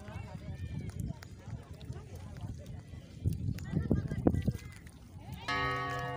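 Background chatter of a group of people talking and calling out, over a low rumble. A short steady held tone sounds about half a second before the end.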